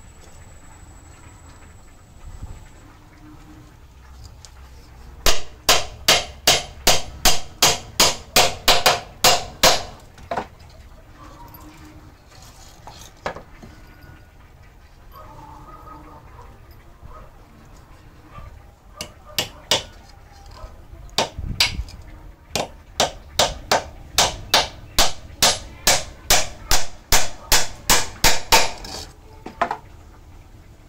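Hammer driving nails into a wooden stool: two runs of about a dozen sharp strikes, roughly three a second, the first about five seconds in and the second in the last third, with a few single knocks between them.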